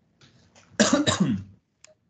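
A person coughs once, about three-quarters of a second in, with a short click near the end.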